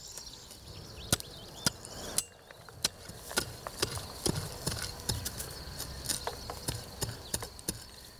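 A small hand hoe chopping a planting hole in dry, crumbly soil: irregular sharp knocks, a few a second, with earth scraping and falling between strokes.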